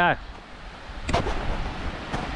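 Wind rumbling on the microphone, with a single sharp knock about a second in and a fainter one near the end: footsteps going down a metal beach stairway.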